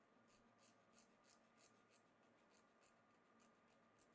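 Faint, quick strokes of a small metal hand file rasping against a steel sewing needle, about three strokes a second.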